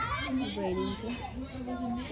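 Several voices talking over one another, some of them high-pitched.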